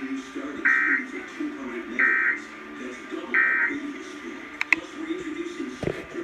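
Emergency Alert System end-of-message data bursts: three short, loud digital screeches about 1.3 seconds apart, played through laptop speakers over the program's voices. Two sharp clicks and a thump come near the end.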